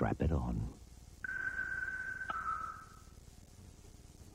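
A steady electronic tone lasting about two seconds that steps down to a slightly lower note halfway through with a faint click, after a brief sliding-pitch sound at the start: the closing audio of a TV commercial played back from a VHS recording.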